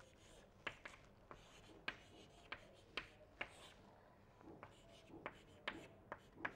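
Chalk writing on a chalkboard: faint, irregular taps and short scratches as the chalk strikes and drags across the board.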